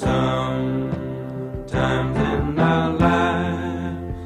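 Background music that starts abruptly and loudly, with full sustained chords.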